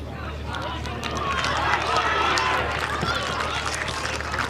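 Voices from a junior football team huddle, several people speaking at once and growing louder from about a second in, over a steady low hum.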